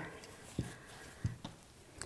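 Quiet handling of T-shirt jersey strips being woven over and under the warp loops on a wooden pot holder loom, with two faint soft knocks, about half a second and a second and a quarter in.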